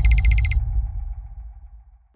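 Tail of a logo-intro sound effect: a deep rumble fading away over about two seconds, with a quick run of high electronic ticks in the first half second.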